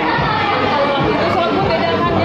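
Indistinct chattering voices, with music in the background.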